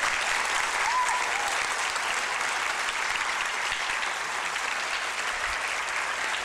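Audience applauding: many people clapping at a steady level.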